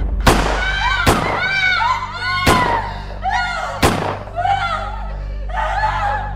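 A handgun fired four times, sharp bangs spread across about four seconds, over film score music with a voice rising and falling between the shots.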